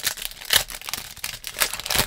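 Foil wrapper of a Panini Rookies & Stars trading card pack crinkling and tearing as it is pulled open by hand, a run of sharp crackles with the loudest about half a second in.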